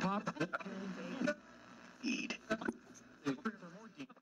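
Unintelligible, radio-like voice sounds with pitch sliding up and down, over a low steady hum; louder for the first second or so, then quieter and more broken.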